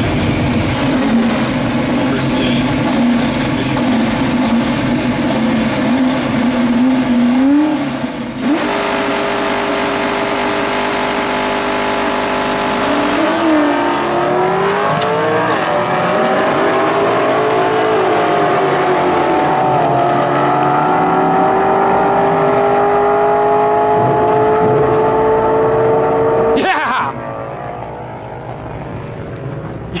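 Drag-racing Fox-body Ford Mustang with a stock Explorer 5.0 V8 on GT40P heads and a T5 manual gearbox. Its engine wavers and revs on the line, then the car launches and pulls hard, the pitch dropping back at each gear change. A long steadily rising pull follows as the car gets farther away, and the sound drops off suddenly near the end when it lifts off at the top end.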